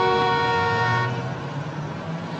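A car horn held for about a second, then cut off, leaving the low rumble of street traffic.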